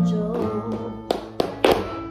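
Soleá flamenco guitar music with notes ringing out. From about a second in come a few sharp strikes, flamenco dance shoes stamping on the floor.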